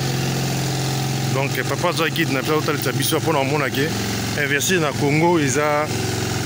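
A steady, low engine hum with people talking over it.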